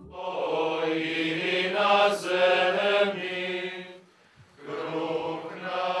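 A group of young theology students singing a slow hymn together, with long held notes. The singing stops briefly about four seconds in, then starts again.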